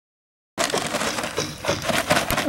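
A paper sack of rendering cement being tipped and emptied into a tub of sand, with the paper rustling and crunching as the powder pours out. The sound starts abruptly about half a second in.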